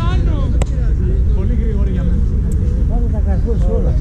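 People talking over a steady low rumble, with one sharp knock about half a second in.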